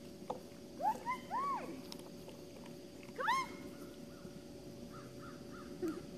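Crow cawing: a few arched calls about a second in, a louder one about three seconds in, and a run of fainter short calls near the end.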